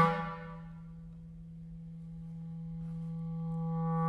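Clarinet holding one long low note: a hard, accented attack that drops quickly to soft, then a slow steady swell louder.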